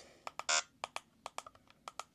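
A quick run of button clicks from an iCopy XS handheld RFID copier as its screen is scrolled, about five a second, with one short electronic beep from the device about half a second in.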